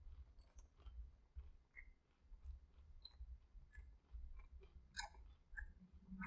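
Faint chewing and small wet mouth clicks of someone eating, with a sharper click about five seconds in, over a low steady hum.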